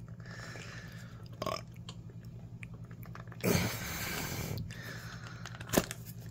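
Rubber protective boot being pried and stretched off a handheld EMF meter's plastic case: rubbery scraping and squeaking, loudest for about a second midway, with a short sharp click near the end.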